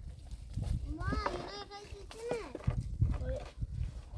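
A few short, high-pitched calls that rise and fall, about a second in and again near the middle, with low knocks and scraping of dry branches being dragged over ground and stone.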